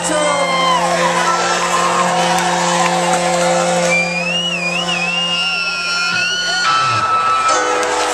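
Live concert music: sustained synthesizer drones with sliding, warbling high tones over, and a crowd cheering and whooping. The low drone stops near the end as new tones come in.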